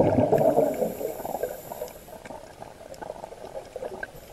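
Scuba diver exhaling through a regulator underwater: a loud burst of bubbling that fades out about a second in, then faint crackling and scattered clicks.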